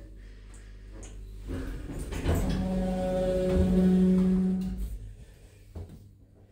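Passenger lift machinery running: a low rumble with a steady hum that builds and then stops about five seconds in, followed by a short click.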